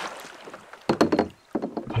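A few short splashes and knocks from a kayak and its paddle in shallow water. They come in two quick clusters, one about a second in and one near the end.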